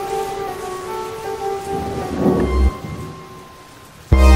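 Held notes of devotional music fading out over a rain-and-thunder sound effect, with a low thunder rumble swelling a little past halfway.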